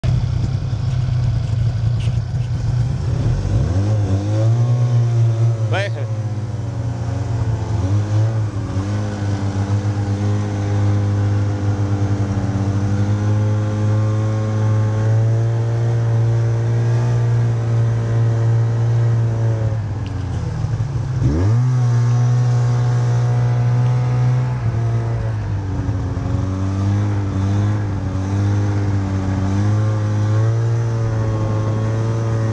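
Snowmobile engines running at speed: a steady drone whose pitch dips and climbs back a few seconds in and again about two-thirds of the way through.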